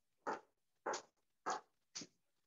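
Footsteps on a hard floor, a steady walking pace of about one step every 0.6 s, four steps in all, picked up through a video-call microphone.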